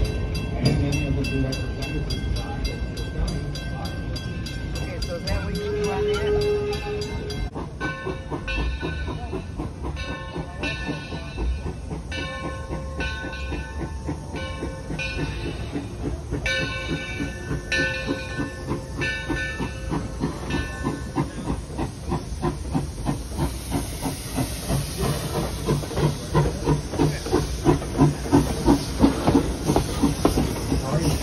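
Mason Bogie 0-6-4T tank steam locomotive Torch Lake arriving: a ringing tone, its bell, repeats about once a second. Then the steam exhaust chuffs and hisses, growing louder as the engine draws alongside.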